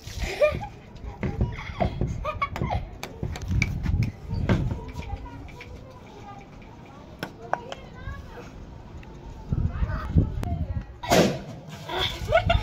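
Children at play: excited voices and exclamations come and go, with light clicks and knocks of small objects being handled.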